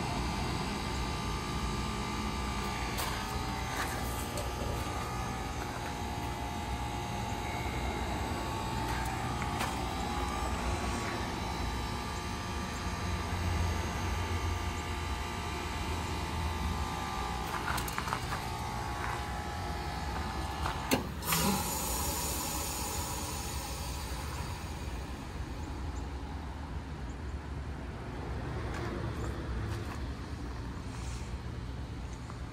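Outdoor unit of a 5-ton Ruud heat pump running steadily with a humming tone. About 21 seconds in, a sharp click and a short hiss, after which the steady tones stop: the unit switching over into its defrost cycle.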